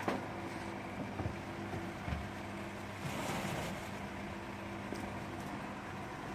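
A steady low mechanical hum, like a motor running, with a few short knocks and a rustle of things being handled.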